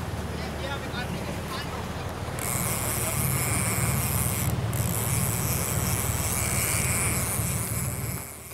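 Steady low drone of the boat's engine, with a fishing reel's drag buzzing from about two and a half seconds in as a hooked sailfish pulls line off. The buzz breaks off briefly about halfway through.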